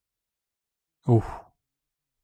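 A man's single short "ooh" about a second in, lasting under half a second.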